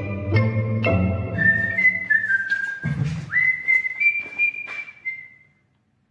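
Music: chords over a bass line, then a whistled melody of a few held, sliding notes that stops about five and a half seconds in.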